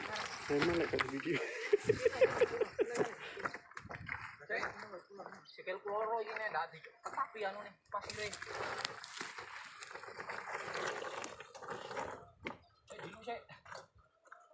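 People's voices calling out in short bursts while two riders wrestle a dirt bike over loose boulders, with frequent sharp knocks and clatters of rock and metal.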